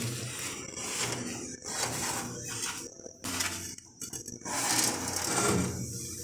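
Metal bread loaf tins sliding and scraping over the oven's wire rack as they are pulled out, in several separate strokes, with cloth rubbing against the metal.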